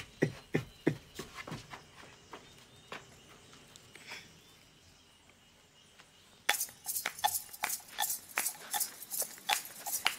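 A run of sharp, irregular clicks and knocks: a few in the first two seconds, then a quiet stretch, then a denser run of several a second from about two-thirds of the way in.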